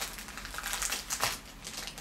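Small clear plastic bag crinkling and crackling in the hands as it is unwrapped, a quick irregular run of crackles.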